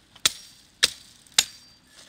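Hand hatchet chopping a thin branch laid on a rock: three sharp strikes, a little over half a second apart.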